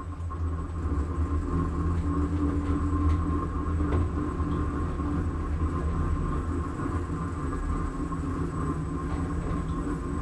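Hissgruppen NewLift machine-room-less traction elevator travelling up, heard from inside the car: a steady low hum and ride rumble with a thin higher whine, building up in the first second as the car gets under way.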